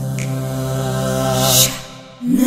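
Layered a cappella voices holding a sustained chord over a low hummed bass note. Near the end a short bright hiss, then the chord cuts off and the voices drop away briefly.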